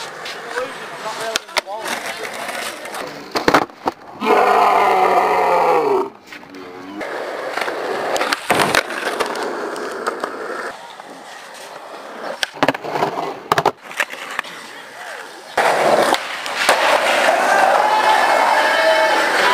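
Skateboard wheels rolling on concrete and tarmac, broken by the sharp clacks of tail pops and landings several times. Skaters shout, loudest about four seconds in and again near the end.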